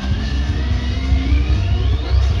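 Live reggae band playing with a heavy bass line, while a tone rises steadily in pitch across the two seconds, a sweep effect over the band from the keyboards.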